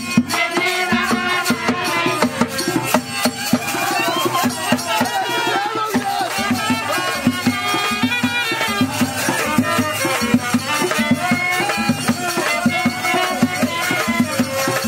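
Live Bengali jatra folk music for a stage dance: hand drums keep a steady, even beat under a winding melody.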